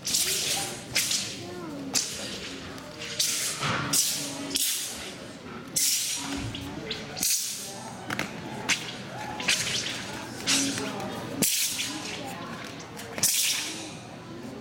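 A wushu sword cutting and snapping through the air during a sword form: a run of sharp swishes and whip-like cracks, roughly one a second, over a low murmur of voices in a large hall.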